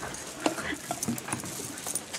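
Scattered light knocks and rustles of people moving about and handling papers and objects at a desk, with faint voices underneath.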